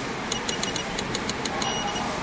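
A rapid run of short, high electronic beeps, ending in a slightly longer beep near the end, over a steady room hum.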